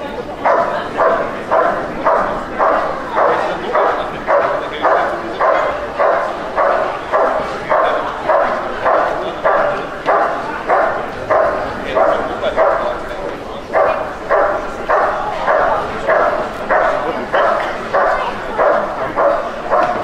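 Dog barking steadily, about three barks every two seconds, with a short break about two-thirds of the way through: a guard bark at a motionless helper in protection work.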